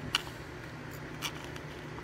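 Two brief, faint scrapes of a razor blade trimming the edges of a cured expanding-foam fill in a surfboard ding, over a low steady hum.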